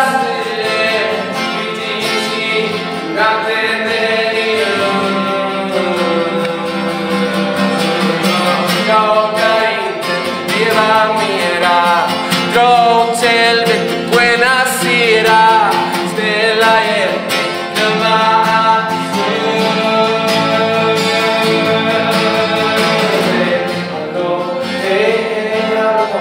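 A man singing with an acoustic guitar accompaniment in a live acoustic pop performance.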